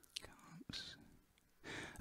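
Near silence with faint breathing and mouth noises from a man pausing at his computer, and a short intake of breath near the end just before he speaks again.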